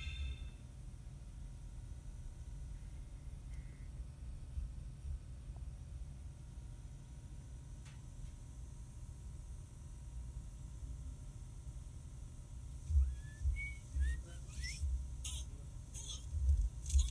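A faint steady low rumble in the truck cab. Near the end, a few short rising whistle-like chirps come from the animated movie preview starting to play through the Pioneer head unit's speakers.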